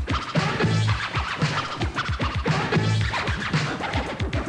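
Electro hip-hop track with turntable scratching over deep, pitch-dropping drum-machine kicks and a bass line.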